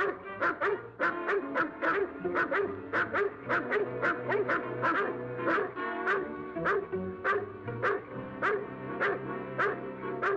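Large dogs barking rapidly and without pause, about two to three barks a second, over background music.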